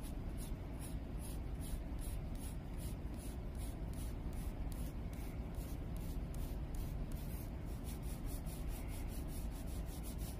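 Colored pencil scratching on paper in quick repeated shading strokes, about three to four strokes a second.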